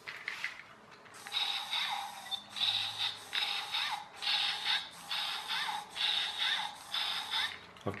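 Small infrared-controlled toy robot sounding in about nine short bursts, roughly two every three seconds, starting about a second in and stopping just before the end. Its batteries are weak.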